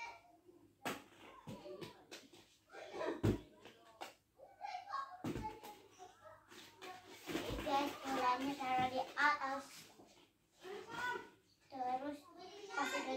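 A young child's voice chattering without clear words, loudest in the second half, among scattered knocks and rattles of hollow plastic play balls being handled and dropped in an inflatable pool.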